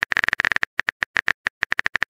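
Phone-keyboard typing sound effect from a texting-story app: rapid, irregular clicks, several a second, as a text message is being typed.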